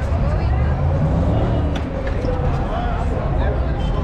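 Chatter of passersby on a busy pedestrian walkway, no words clear, over a steady low rumble of street traffic.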